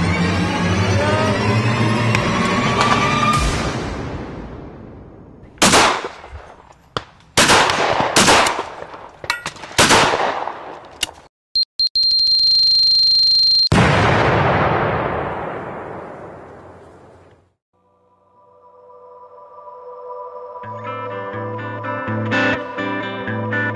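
Title-sequence music with sound effects: dense dramatic music fades out, then a run of sharp shot-like bangs with ringing tails, then a held high beep over fast ticking that decays away into a brief silence. Strummed guitar music then fades in over the last few seconds.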